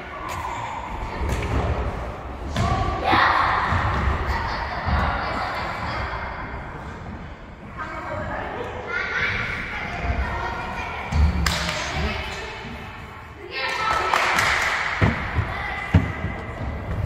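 Echoing thuds of a football being kicked and bouncing on a wooden gym floor during a children's game, with children's shouts and calls in bursts in a large hall.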